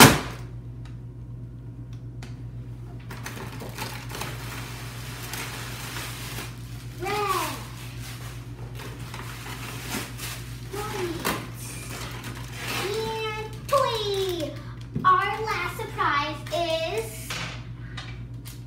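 A fist punching through the paper face of a cardboard punch box, one loud hit at the very start, followed by a long stretch of paper rustling and crinkling as a hand digs into the compartment and pulls out paper stuffing and a foil blind bag.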